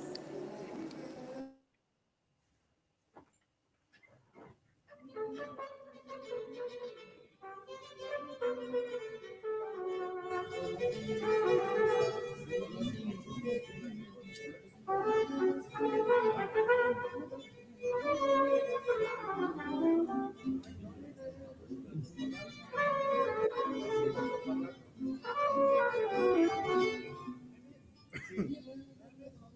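Mariachi band starting to play about five seconds in, after a short silence: held melody notes over the band's backing, rising and falling phrase by phrase.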